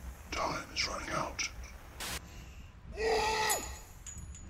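A woman's muffled, breathy gasps and whimpers, her mouth held open by a gag device, then a short burst of hiss about two seconds in and a louder pitched moan about a second later that falls away at the end.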